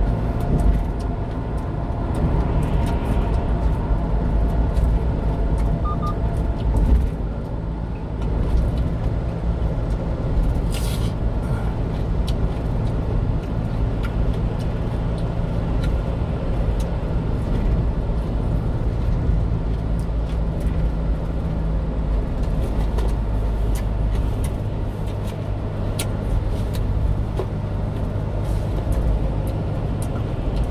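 Steady engine drone and tyre and road noise heard from inside the cab of a 1-ton box truck cruising at expressway speed.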